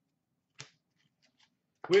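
Hockey trading cards handled by hand: one short sharp click about half a second in, then a few faint ticks. A man's voice starts right at the end.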